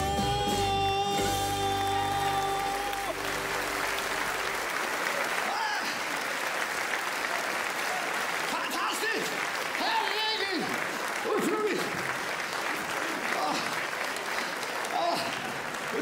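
A live band's final chord is held and dies away in the first three or four seconds, then a theatre audience applauds steadily, with a few voices calling out in the middle.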